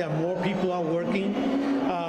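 Only speech: a man talking steadily in an interview.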